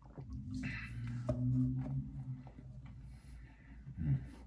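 A man's long, low hummed "mmm" of enjoyment, held for about two seconds, with a breathy exhale early in it, followed by faint mouth clicks.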